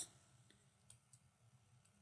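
Near silence with a few faint clicks, about half a second and about a second in, from a stylus tapping on a tablet screen while writing.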